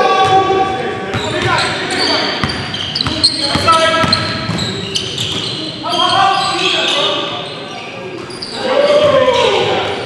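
Basketball game in a gym: the ball bouncing on the hardwood court, sneakers squeaking and players' voices, echoing in the hall.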